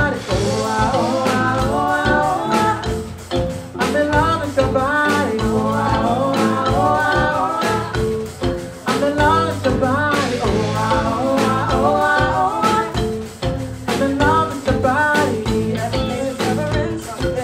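Live soul band playing with drum kit, electric bass, electric guitar and keyboard, while a man and a woman sing in phrases over the beat.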